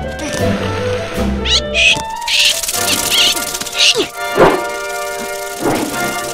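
Animated-film soundtrack: background music with sustained tones. A few short, high squeaky calls come through the middle, and two sweeping sound effects come in the second half.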